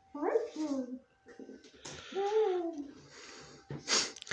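A person's wordless voice sounds: two short hummed utterances, the first falling in pitch, the second rising and then falling, with a soft rustle between and after them.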